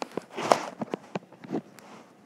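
A quick, irregular run of light taps and knocks, with a short rustle about half a second in: handling noise close to the microphone.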